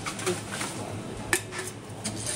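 Empty aluminium drink cans being fed into a T-710 reverse vending machine: light metallic clinks and rattles, with one sharp clack a little over a second in.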